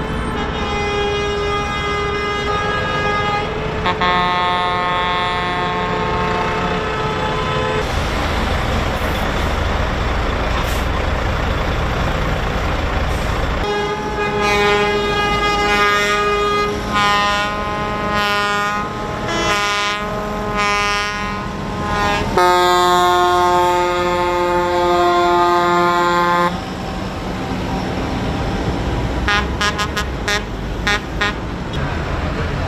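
Tractor horns honking in protest: long held blasts at a few different pitches, with a stretch of short repeated honks in the middle, over the low rumble of idling diesel tractor engines.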